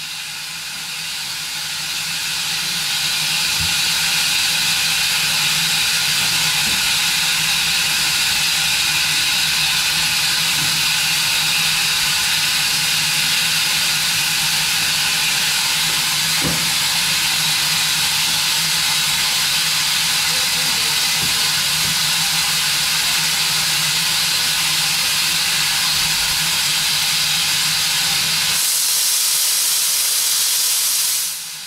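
Steam locomotive's safety valve blowing off: a loud, steady hiss of escaping steam that builds over the first few seconds and then holds.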